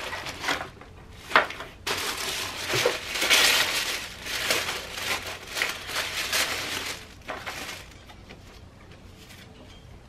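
Tissue paper crinkling and rustling as hands unfold it inside a cardboard box, with a sharp click about a second and a half in. The rustling is densest and loudest from about two to seven seconds in, then goes quiet.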